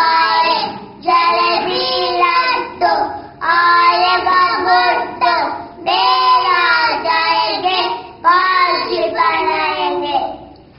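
Two young boys singing a song together with no instruments, in short phrases of held notes with brief breaks between them.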